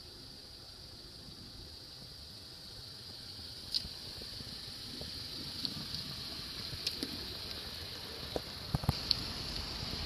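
Faint steady hiss of background and microphone noise, with a few short clicks and knocks from about four seconds in, clustered near the end, as the phone is handled and a car's rear door is opened.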